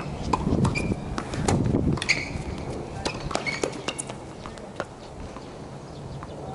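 Tennis players' shoes squeaking and scuffing on a hard court, mixed with a scatter of sharp knocks. The sounds are busiest in the first two seconds and grow sparser after.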